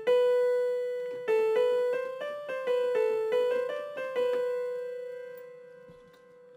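Single melody notes from a software instrument. A held B comes first, then about a second in a quick run of short notes steps up and down through the neighbouring scale notes, ending on a held note that fades away over the last two seconds.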